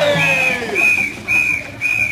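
Four short, even blasts on a high-pitched whistle, about two a second. Over the first half-second a long held note slides down in pitch and fades.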